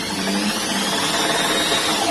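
Handheld electric drill running steadily under load as it bores into the wooden wardrobe panel, with a faint high motor whine over the grinding.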